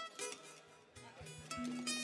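Soft plucked-string playing from a Puerto Rican cuatro and guitar, with bass notes coming in about a second in.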